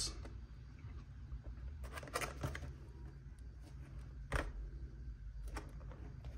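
A cardboard product box handled and turned over in the hands, giving a few light taps and scrapes: a cluster about two seconds in and a sharper one a little past the middle, over a steady low hum.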